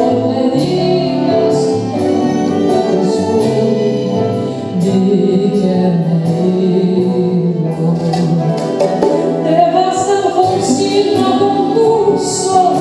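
A woman singing a Latin American folk song live, accompanied by acoustic guitars and double bass.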